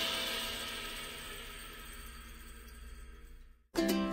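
Background music: the last chord of one track rings out and fades away, a brief moment of silence, then a new tune with plucked strings starts near the end.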